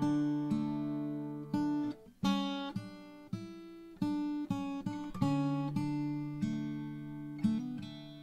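Steel-string acoustic guitar fingerpicked: a melody line of single plucked notes, about one to two a second, each ringing on over sustained lower strings.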